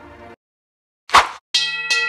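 End-screen sound effect: a brief whoosh about a second in, then a bright bell-like chime struck twice in quick succession, its notes ringing on.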